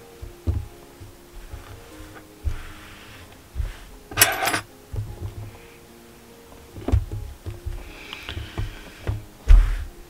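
Soft background music under scattered low thumps and a brief rustle about four seconds in, from a crocheted acrylic-yarn hat being stretched, handled and laid flat on a table.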